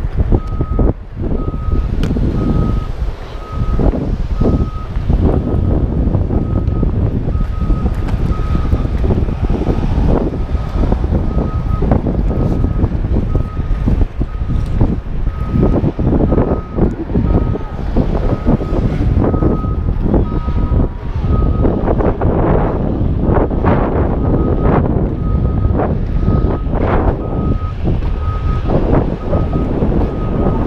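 Backup alarm of heavy construction machinery beeping over and over in a steady rhythm, pausing briefly about two-thirds of the way through. It sounds under loud wind buffeting on the helmet camera's microphone.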